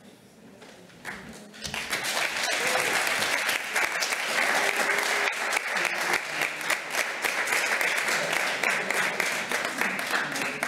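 Audience applauding, the clapping starting about a second and a half in and quickly building to a steady, dense round of applause.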